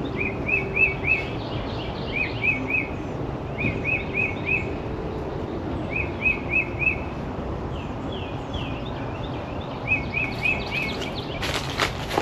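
A songbird repeating a short phrase of three or four quick notes about every two seconds, over steady outdoor background noise. Near the end there is a brief rustling clatter.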